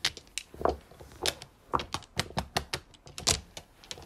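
Mahjong tiles clacking against one another on a felt-covered table: a dozen or so irregular sharp clicks, the loudest a little past three seconds in.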